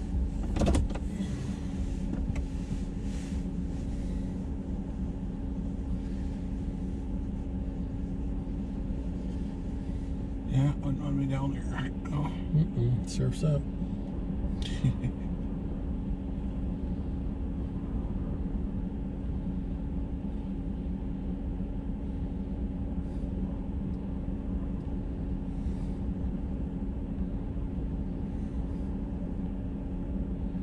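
A truck's engine idling, heard from inside the parked cab as a steady low hum with a constant tone. A few muffled words break in about ten to fifteen seconds in.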